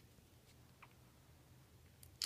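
Near silence: room tone with a faint low hum and two faint ticks.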